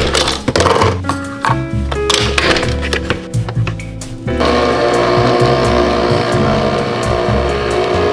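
Background music, with a few clicks as a Nespresso capsule coffee machine is loaded and closed. About four seconds in, the machine starts brewing with a sudden, steady whirring hum as coffee pours into the mug.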